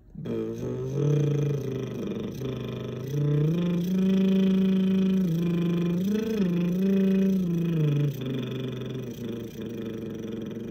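A man humming a slow vocal exercise with his lips closed, in long held notes. The pitch steps up twice, wavers briefly about six seconds in, and drops back low about eight seconds in.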